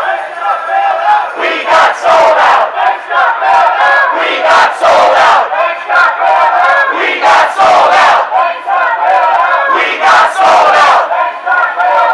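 A crowd of protesters shouting slogans together, many raised voices in loud repeated bursts about every second or so.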